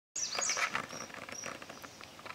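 Light rustling and quick crackling clicks, loudest in the first second and then easing, with a few short high chirps over them.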